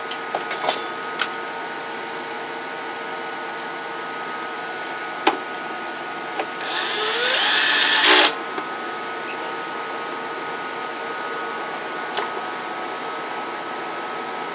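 CB linear amplifier's cooling fan running with a steady hum, with a few light clicks. About six and a half seconds in, a louder whir rises in pitch for about a second and a half and then cuts off suddenly.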